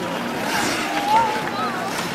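Indistinct chatter of several people's voices over a steady background hiss, with no clear words.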